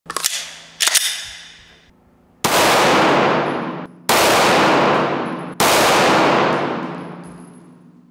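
Gunshots fired through a car windshield: a few sharp cracks in the first second, then three long, drawn-out blasts that each start suddenly, the last one slowly fading away.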